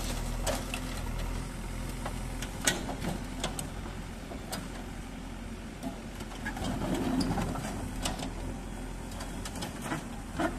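JCB mini excavator's diesel engine running steadily while its bucket works on a stripped car body, with scattered sharp knocks of metal and a louder crunching stretch about seven seconds in.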